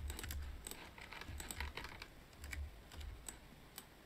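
Faint, irregular clicking of computer keyboard keys and mouse buttons, a few scattered clicks a second.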